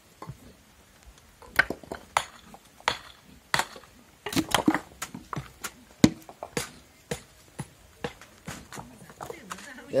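Irregular sharp knocks and clanks, several close together at times, of metal pans and a digging tool being handled as soil is moved by hand.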